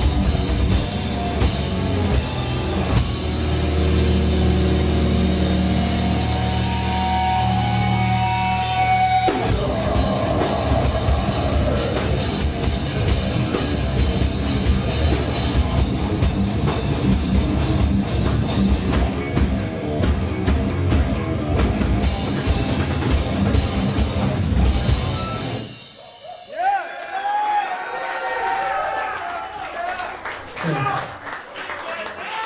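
Live heavy metal band with distorted guitars, bass and drums: long held low chords, then a dense drum-driven passage that stops abruptly near the end of the song. Shouts and cheers from the audience follow.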